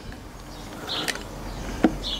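Pizza-cutter wheel rolling through puff pastry and baking paper on a wooden board. A bird chirps once about a second in, and there is a light click near the end.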